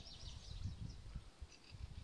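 Faint outdoor background in a pause between speech: a low, uneven rumble with a few faint bird chirps in the first half.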